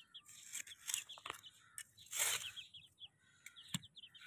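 Young chicks peeping: a steady run of short, high, falling cheeps, several a second. A brief rustle comes about halfway through.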